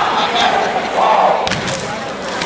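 Step team stepping: a run of sharp stomps and claps in unison starts about one and a half seconds in, after voices shouting over the hall.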